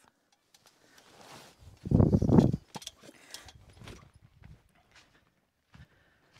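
Camera handling and movement noise: a brief loud low rumble about two seconds in, then scattered light knocks and clicks.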